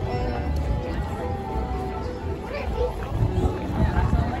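Background music with held notes playing over outdoor speakers, under the chatter of a crowd and a low rumble.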